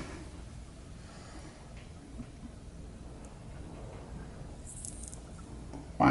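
Tarantula stridulating in defence: a few faint, brief crackles over a quiet background, most of them around five seconds in. The crackling is the spider's threat warning, given when it turns super defensive.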